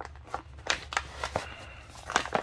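Plastic packaging bag crinkling and rustling in short, irregular crackles as hands handle the bagged telegraph key.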